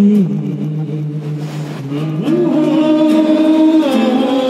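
Male voice singing through a handheld microphone, holding a low note for nearly two seconds, then sliding up to a higher note and holding it, with acoustic guitar accompaniment.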